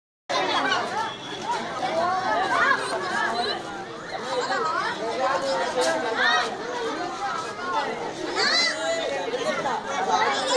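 Chatter of many children's voices at once, overlapping talk and high calls rising and falling without a break.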